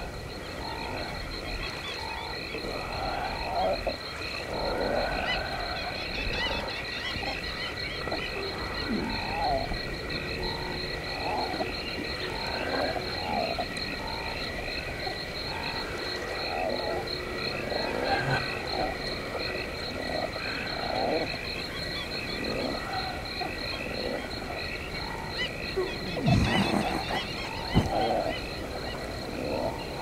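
A chorus of frogs croaking, many short calls overlapping throughout, over two steady high-pitched tones. Two louder sounds falling in pitch come near the end.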